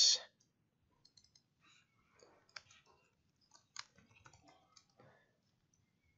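Faint, irregular computer keyboard keystrokes and mouse clicks, a word being typed into a text box.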